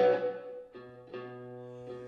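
Electric guitar ringing out sustained chords, with new chords struck about three-quarters of a second and just over a second in.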